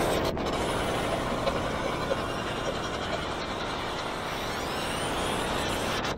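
Steel roller-coaster train running along its track, a steady rumbling whoosh that eases off slightly, with a faint rising whine in the second half.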